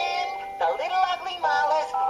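Cartoon soundtrack music with a singing-like melody line that slides between held notes.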